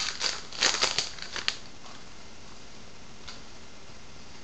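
Crinkling and tearing of a baseball card pack's wrapper as it is opened by hand, a flurry of crackles in the first second and a half.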